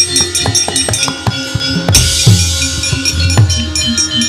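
Gamelan accompaniment for a wayang kulit scene: drums and ringing metallophone tones, with many sharp rapid knocks and a loud crash with a hiss about two seconds in.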